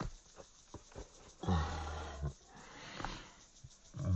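A few soft pats of hands on soil, then a man's low, drawn-out groan lasting nearly a second, followed by a breathy exhale.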